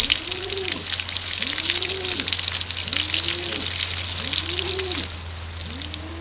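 Garden-hose water spraying and splashing onto a nylon rain jacket's hood and back, a steady hiss that stops about five seconds in. A bird cooing about five times in the background.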